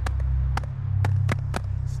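A run of sharp hand claps in a chant rhythm, about two a second, over a steady low hum.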